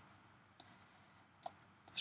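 A few faint computer mouse clicks, about three, over quiet room tone.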